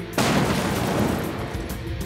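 An explosion: one loud blast just after the start, its noise trailing off over the following two seconds, with background music underneath.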